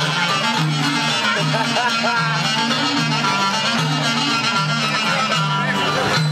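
Greek folk dance music from Epirus, played loud: an ornamented melody line over a steady, repeating bass pattern.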